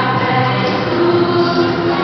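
Choral music with held sung notes over a steady accompaniment, played loud in a large hall.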